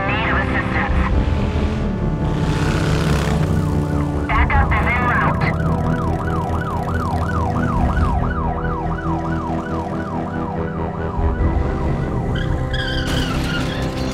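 Siren sound effect in a fast up-and-down wail, about three cycles a second, laid over a steady synth drone in an album intro; the siren runs from about five seconds in until about twelve seconds, with short voice-like fragments before and after it.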